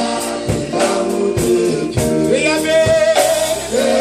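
Live gospel song: men singing into microphones over a band, with a steady drum beat under the voices.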